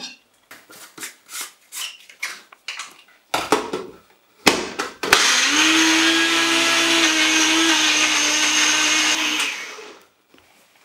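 Personal bullet-style blender grinding chopped onion, tomato, ginger, garlic and green chilli, with no water added, into a paste. The motor runs loud and steady for about four seconds, starting halfway through, then winds down near the end. Before it starts there are light clicks and a few knocks as pieces drop in and the cup is set on the base.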